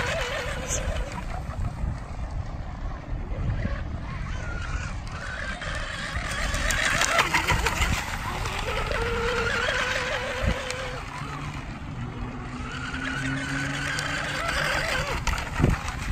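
Electric RC race boat running at speed on 4S power. Its Leopard 3660 brushless motor and 40 mm prop make a whine that rises and falls in pitch as the boat throttles and passes, over a steady rushing noise.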